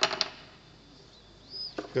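A few light clicks and taps of small hand-made prop parts being picked up and handled on a workbench: a quick cluster right at the start, then quiet, then a couple more knocks near the end as a piece is set against the unit.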